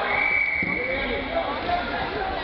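Background chatter of voices in a hall, with a steady high-pitched tone starting just after the beginning and lasting just over a second.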